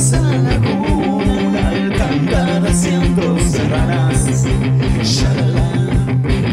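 Rock band playing an instrumental passage: guitar and bass over a steady drum beat, with cymbal hits.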